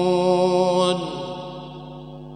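A man reciting the Quran (tilawah) in the Hijaz melodic mode, holding one long, steady note at the end of a verse. It breaks off about a second in and fades away.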